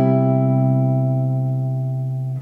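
A C major 7 chord struck once on an archtop jazz guitar and left ringing, fading only slowly.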